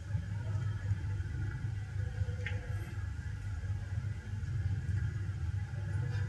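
Low, steady rumble of room noise in a large hall, with a single faint click about two and a half seconds in.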